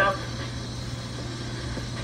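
A steady low hum under faint even background noise, with the tail of a spoken word right at the start.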